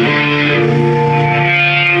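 Electric guitar played through effects, ringing out long held notes over a steady low drone, with a new higher note coming in a little under a second in.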